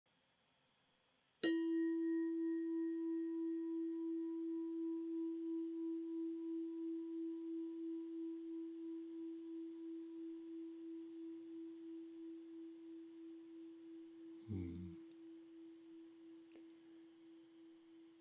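A meditation bell struck once about a second and a half in, ringing with one steady tone and a few fainter higher overtones that waver as it slowly dies away. A brief, soft, low sound follows near the end.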